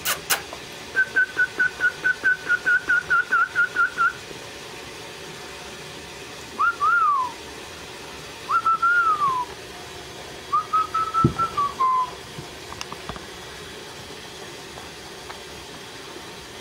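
A person whistling to call puppies: a quick run of about a dozen short repeated notes, then three longer whistles that rise and fall in pitch.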